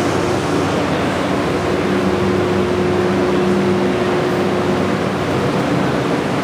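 Steady loud rushing noise with a low steady hum underneath, as from air-moving machinery.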